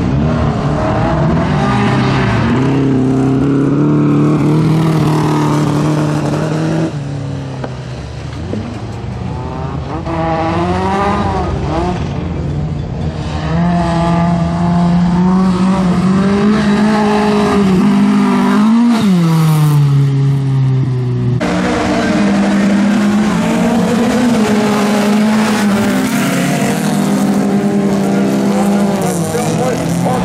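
Bilcross race cars on a gravel and dirt track, engines revving hard and easing off through the corners. About 19 seconds in one engine rises sharply in pitch and then falls away, and the sound jumps abruptly twice.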